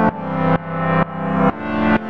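Background music: a sustained, distorted chord pulsing about twice a second, each pulse swelling up and then cutting off abruptly.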